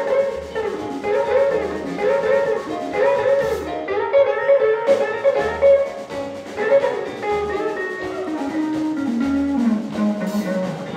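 Electric blues guitar solo on a hollow-body archtop electric guitar, played in short repeated phrases and ending on a descending run of notes near the end, with drums behind it.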